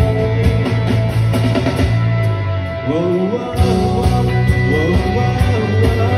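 Live rock band playing: electric guitars, bass line and drum kit. The bass briefly drops out about halfway through and then comes back in.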